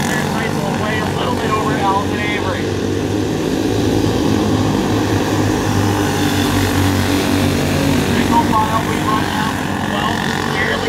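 Several racing go-kart engines running at speed together as the karts lap a dirt oval: a steady drone.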